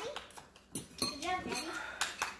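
A few light clinks of a metal fork against a bowl in the first second, followed by a soft voice.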